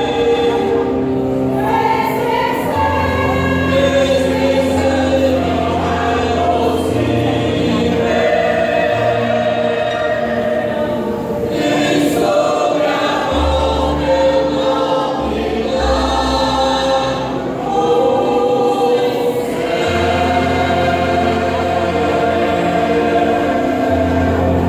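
A mixed choir of men and women singing a hymn in parts, with sustained notes and a low bass line held under the voices. There is a brief dip between phrases about two-thirds of the way through.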